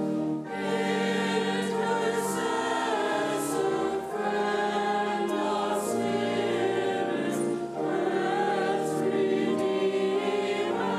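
Mixed church choir of men and women singing, sustained sung notes changing about every second, with two brief pauses for breath.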